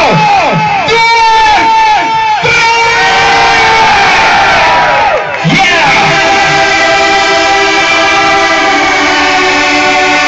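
Live electronic music from a synthesizer: a run of short falling synth zaps about twice a second, then a long downward sweep about five seconds in, giving way to sustained layered chords.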